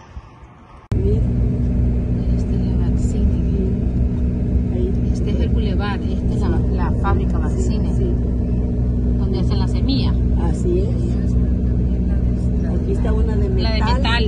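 Car engine and road noise heard from inside the moving car's cabin: a steady low drone that starts abruptly about a second in, with voices talking faintly over it.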